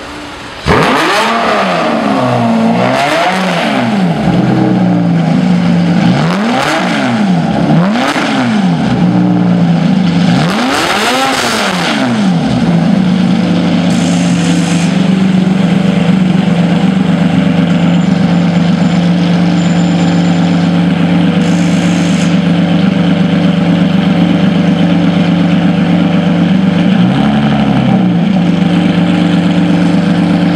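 Lamborghini Murciélago V12 starting up with a sudden loud burst just under a second in. It is revved about five times over the next dozen seconds, then settles to a steady idle, with one small blip of the throttle near the end.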